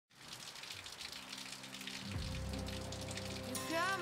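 Steady rain falling, with background music fading in under it: held low tones, a bass coming in about two seconds in, and a voice starting to sing near the end.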